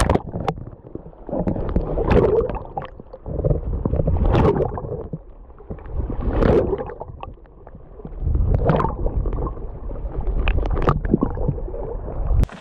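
Shallow lake water heard through a submerged camera: muffled sloshing and gurgling that swells and fades about every two seconds, with a splash right at the start as it goes under.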